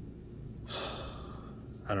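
A man gasps, a single breathy exhale of excitement about a second in, over a steady low hum. Speech begins at the very end.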